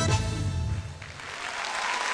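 A live band's closing notes die away, then audience applause swells from about a second in.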